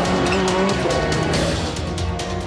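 Rallycross car engines running as the cars race, mixed with background music.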